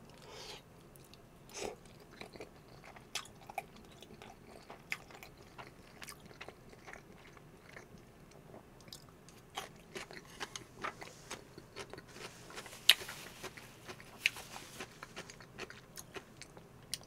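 Close-miked mouth sounds of a man chewing a mouthful of creamy pasta: faint, scattered wet clicks and smacks. Near the end come denser crunches as he bites into a pickle slice, with one sharp crunch about 13 seconds in.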